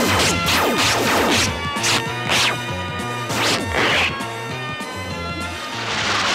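Cartoon soundtrack music with a quick run of sound-effect crashes and hits, about two a second, thinning out after about four seconds.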